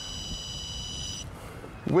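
Homemade tracker detector beeping: one steady, high-pitched electronic tone that cuts off about a second and a quarter in. The beep is the sign that it has picked up the mobile-phone signal of a hidden car tracker.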